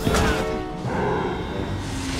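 Cartoon crash-and-rumble sound effect as the undersea base is jolted by a surge of water, hitting suddenly right at the start, under dramatic background music.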